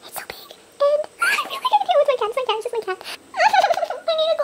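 A woman's voice sped up to a high chipmunk pitch, whining and babbling in short, broken sounds. From about a second in to about three seconds in there is one long whine that falls steadily in pitch.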